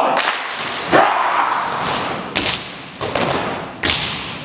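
Haka group striking in unison, with stamping on the hall's wooden floor and slaps on the body: four heavy thuds at uneven gaps, each ringing on in the large gymnasium, between shouted chants.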